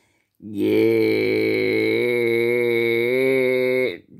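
A man's voice holding one long, low vocal sound on a nearly steady pitch, a drawn-out vowel lasting about three and a half seconds, starting about half a second in after a short silence.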